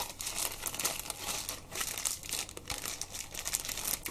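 Plastic wrapping crinkling and rustling as it is handled and unwrapped, a dense run of small crackles.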